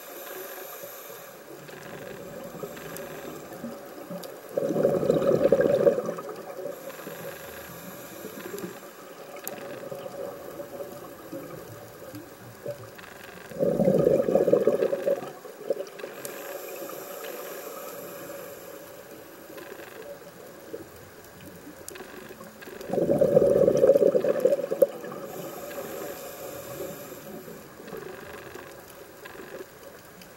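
A scuba diver breathing through a regulator underwater. Each inhalation is a thin high hiss, and each exhalation is a loud rush of bubbles. The exhalations come about every nine seconds, three times.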